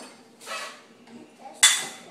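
A metal bowl set into a dishwasher rack among dishes: a faint clatter, then one sharp clank with a short metallic ring about one and a half seconds in.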